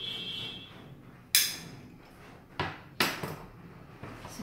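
Stainless-steel hand-press citrus squeezer worked over a glass bowl: a short squeak, then three sharp metallic knocks, the first the loudest and ringing, the last two close together.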